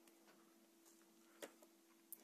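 Near silence with a faint steady hum, broken about one and a half seconds in by a single small click as a micro-USB plug seats in the charger board's socket.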